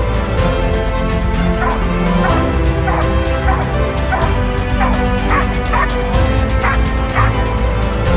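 Croatian sheepdog barking in a run of short barks, about two a second, starting about one and a half seconds in, over background music.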